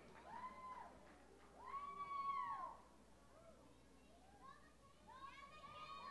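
Faint, high-pitched drawn-out whoops from audience members, each rising and then falling in pitch: one about half a second in, a louder one about 2 s in, and several overlapping calls from about 5 s.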